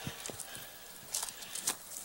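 Quiet rustling and two light clicks of paper pages being handled and turned at a lectern, the clicks about a second in and again near the end.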